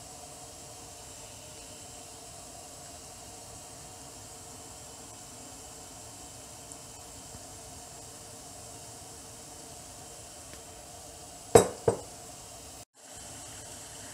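Steady low hum of the stove-top steamer setup. About eleven and a half seconds in come two sharp clinks, a glass measuring cup knocking against porcelain bowls as batter is poured into them.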